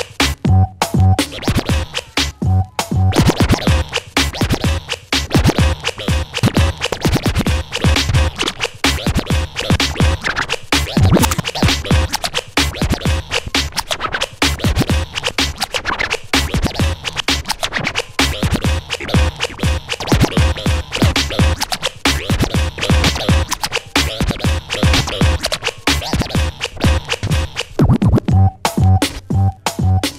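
DJ scratching vinyl records on Technics turntables over a hip-hop beat, with rapid, chopped cuts of the record against a steady bass-heavy pulse.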